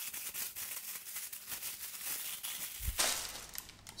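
Tissue paper crinkling and rustling as a mug is unwrapped from it, with a brief low thump about three seconds in.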